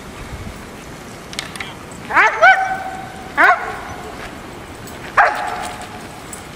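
A dog giving three short, high-pitched barks or yips, about two, three and a half and five seconds in.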